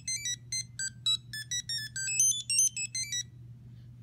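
ImmersionRC Vortex 250 Pro racing quad playing its electronic startup tune on power-up: a quick melody of short beeped notes that ends about three seconds in. A low steady hum sits underneath.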